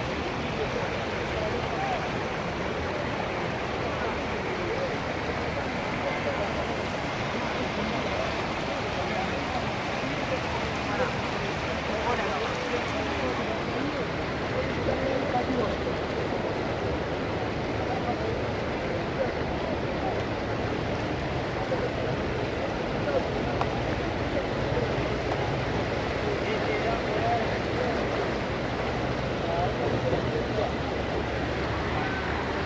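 Floodwater rushing steadily across a road and spilling over its edge, with many people talking indistinctly in the background.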